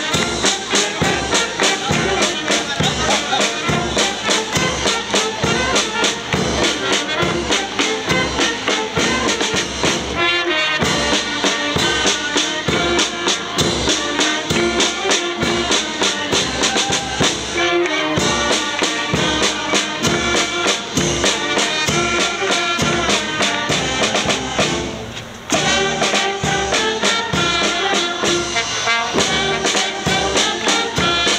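A band of brass instruments and drums playing a lively dance tune with a steady beat. The music breaks off briefly about 25 seconds in, then carries on.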